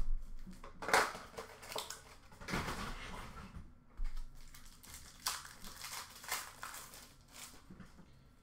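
Crinkling and rustling of Upper Deck Allure hockey card packs' wrappers as the packs are taken out of their box and handled, in a string of short bursts about a second apart.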